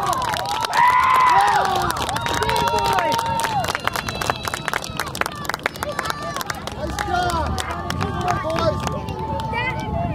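Soccer spectators and players talking and calling out, overlapping and indistinct. A quick run of sharp clicks runs through the middle few seconds.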